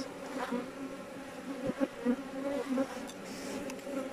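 Honeybees humming in an opened hive, a steady low drone from the colony on the exposed frames. Two quick taps come a little before the middle.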